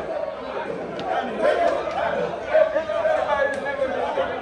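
Chatter: several men talking over one another in a room.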